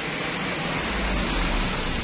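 Steady, even hiss with a low rumble beneath it.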